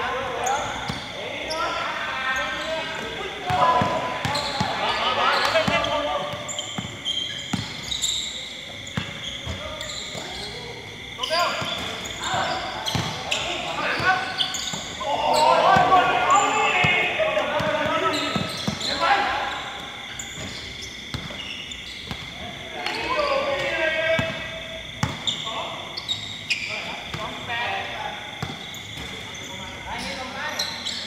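Basketball bouncing on a hard court during a pickup game, with short impacts scattered throughout, under players' shouting and calling voices.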